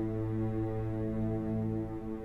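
Ambient background music: a low, steady drone of held tones.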